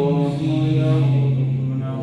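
A man chanting a dua (supplication) in a melodic, drawn-out voice, holding long steady notes.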